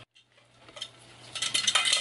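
Glass cookie jar being picked up and tilted, the cookie-shaped tokens inside rattling and clinking against the glass in a string of light clicks that grows busier toward the end.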